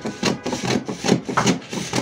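Scissors cutting through a sheet of pattern paper: a quick, even run of snips, several a second, with the paper rustling as the blades advance.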